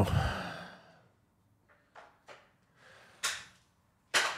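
A man's long sigh of relief, a breathy exhale fading over about a second, followed by a few faint mouth clicks and a short, sharp breath about three seconds in.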